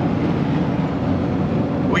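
Steady road and tyre noise with engine drone inside a vehicle's cabin at freeway speed.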